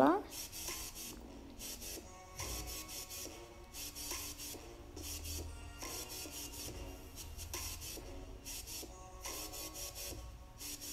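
A fluffy makeup brush swishing across the eyelid in short, repeated strokes, blending eyeshadow.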